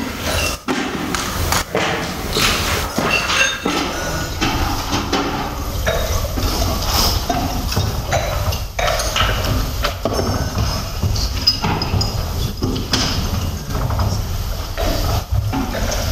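Wine being tasted close to the microphone: slurped and swished in the mouth with a gurgling sound, among scattered knocks and clinks.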